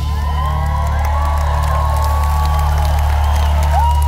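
Arena rock concert: a steady low bass drone holds while the crowd cheers and whoops, many voices holding long notes together.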